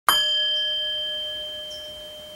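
A single struck bell-like tone: one sharp strike, then a long ring of several clear pitches that slowly fades.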